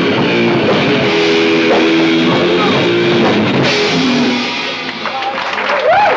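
Live rock band with distorted electric guitars, bass and drum kit playing loudly, the song ending about four seconds in. The crowd then starts to clap and shout.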